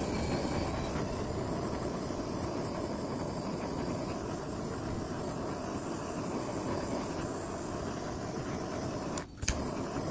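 Handheld kitchen blowtorch running with a steady hiss as its flame caramelises powdered sugar on top of a cake. The hiss drops out briefly about nine seconds in, with a sharp click, then carries on.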